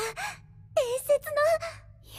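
Only speech: a young woman's voice speaking Japanese dialogue.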